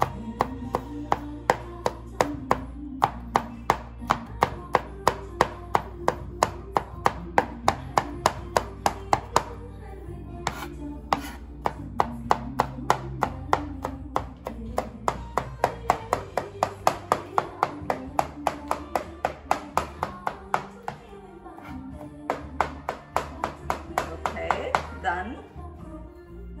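Chef's knife mincing garlic on a plastic cutting board: quick, even chops at about three to four a second, with a few short pauses. Background music plays underneath.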